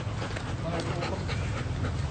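Golden retriever panting steadily with its mouth open.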